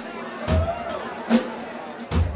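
Scattered drum-kit hits on a live stage: a bass drum about half a second in and a sharper drum hit a little past the middle, over faint room and crowd noise.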